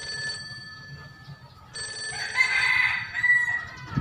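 Phone ringtone ringing: one ring stops just after the start, and a second ring sounds from about two seconds in until just past three seconds.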